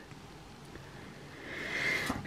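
Quiet room tone, with a faint hiss that swells near the end.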